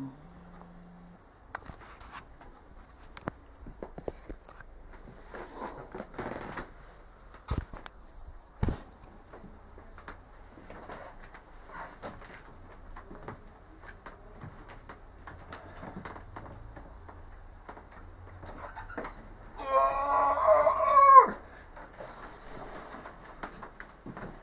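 Scattered light knocks and clicks of things being handled, then about 20 seconds in a loud, wavering dog whine lasting about a second and a half, likely from the household dachshund.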